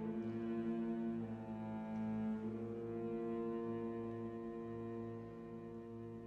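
Organ playing slow, sustained chords that change twice in the first few seconds, then growing softer toward the end.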